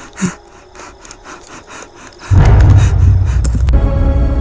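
Faint scattered clicks and rustles for about two seconds. Then a loud, deep rumbling boom starts suddenly, and a sustained eerie horror-music chord joins it near the end.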